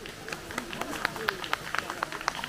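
Footsteps crunching on gravel in quick, irregular clicks, with people talking faintly in the background.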